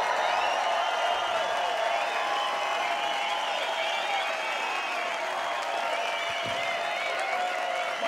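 Concert audience applauding and cheering, with many whistles and shouts over the clapping.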